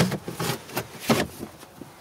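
Handling noise: a rubber cover being slid back into place over a battery in a seat box, with cables shifting. It comes as several short scrapes and knocks at irregular intervals.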